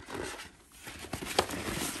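Paper and cardboard packing stuffing rustling and scraping as it is pulled out of a nylon tote bag, with one sharp click partway through.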